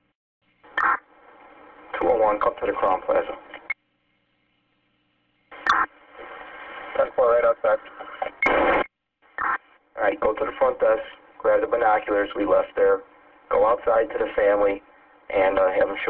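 Police two-way radio traffic: about four short transmissions of indistinct speech over a thin, narrow radio channel. Several open with a sharp click, and a steady hum sits under each one. Between transmissions the channel cuts to dead silence.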